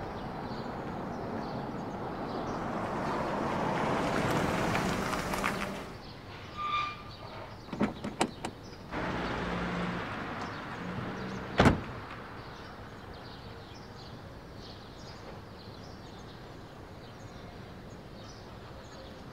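A car drives by in the street, its noise building and then cutting off. A few clicks of car door latches follow, then a car door slams shut once, sharply, about two thirds of the way in.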